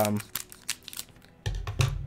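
A short run of light, irregular clicks and taps; about one and a half seconds in, a low steady hum comes in beneath them.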